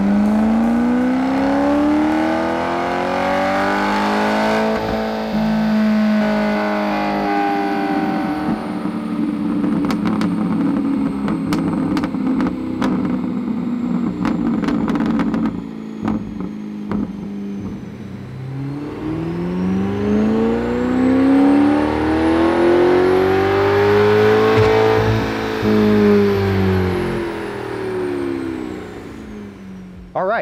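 C8 Corvette's 6.2-litre LT2 V8, breathing through aftermarket headers and a cat-back exhaust, running loaded on a chassis dyno: the revs climb, hold at a steady high speed for a long stretch with a series of sharp clicks, then climb again to a peak and fall away as it winds down near the end.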